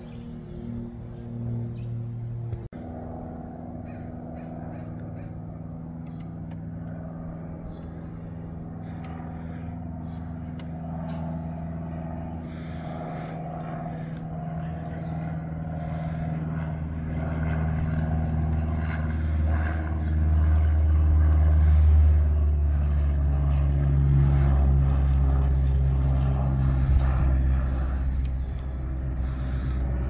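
Small propeller airplane flying overhead: a low, steady engine drone that grows louder over about twenty seconds and is loudest around two-thirds of the way through.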